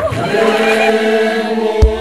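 Gospel choir voices holding one long, steady chord, with a low thump near the end.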